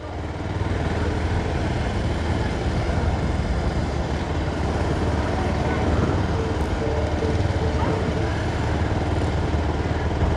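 Busy street noise with a steady low rumble, motorcycles among the traffic and faint voices in the background.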